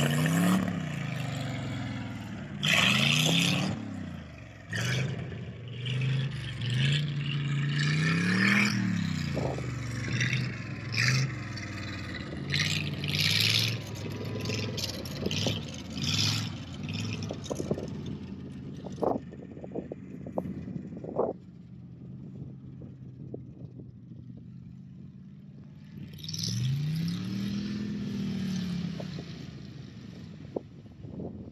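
Old Chevrolet flatbed truck's engine revving as it drives across a field, its pitch rising and falling several times, with clattering and rattling along the way. It grows quieter after about twenty seconds as the truck moves off, then revs once more near the end.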